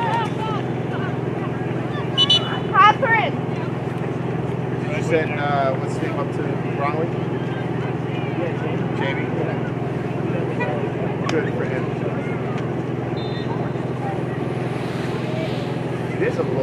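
Distant shouts and calls from players and spectators at an outdoor soccer match, over a steady low rumble. A few louder calls come about two to three seconds in.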